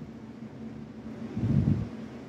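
Faint steady hiss with a low hum from the recording, and one soft low sound lasting about half a second, about one and a half seconds in.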